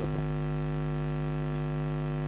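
Steady electrical mains hum with a buzzy row of overtones, picked up in a wireless-microphone and mixer sound system.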